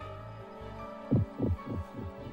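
Sustained, droning dramatic music from the anime's soundtrack, with a heartbeat sound effect: two double thumps in the second half.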